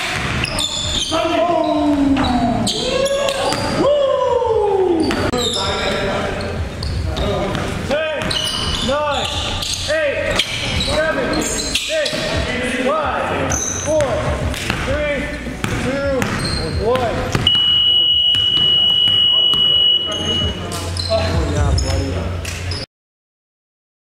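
Basketball game sounds echoing in a gym: a ball dribbling on the hardwood, players' voices, and short chirping squeaks. Near the end a steady high-pitched tone sounds for about three seconds.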